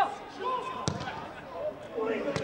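A football kicked once on an outdoor pitch: a single sharp thud about a second in, with players' short shouts around it.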